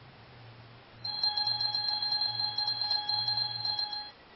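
Electronic alarm-like beep tone that comes on suddenly about a second in and holds steady for about three seconds before cutting off, with a fast pulsing flutter running through it.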